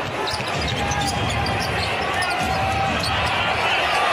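Steady arena crowd noise, with a basketball bouncing on a hardwood court during live play.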